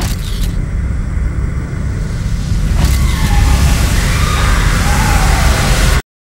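Designed logo sound effect: a heavy, deep rumble struck by a sharp hit at the start and another about three seconds in. It swells into a loud, hissing rush that cuts off abruptly at the end.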